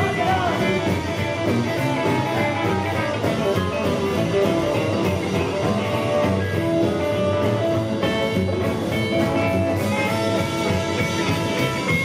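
Rockabilly band playing an instrumental passage live, with no vocals: electric guitar over upright bass and acoustic rhythm guitar, with a steady beat.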